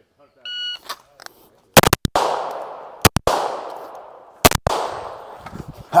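An electronic shot-timer start beep, then handgun shots fired in quick strings of two or three, about a second and a half apart, each string trailing off in a long echo.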